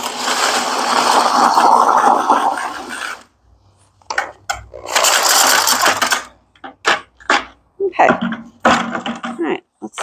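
Corded drill spinning a paddle mixer through thick grout in a plastic bucket, the paddle scraping the bucket's sides: one run of about three seconds, a brief pause, a second run of about a second and a half, then shorter bursts and knocks. The drill is overloaded by the stiff mix and ends up smoking.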